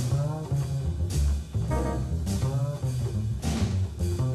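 Hard-bop jazz combo playing in swing time: a double bass line and drum-kit cymbal strokes under a gliding melodic lead line.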